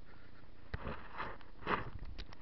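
Kayak paddling: a light knock, then two short swishing splashes about a second apart.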